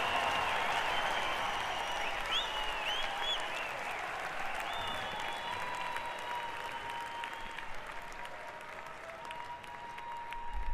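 Concert audience applauding and cheering, with shrill whistles, the noise slowly fading down.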